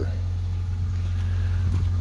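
A steady low engine hum with no change in pitch or level.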